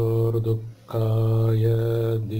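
A man chanting Sanskrit verse in a level intoning voice: a short phrase, a brief breath-break under a second in, then a longer phrase held on one pitch.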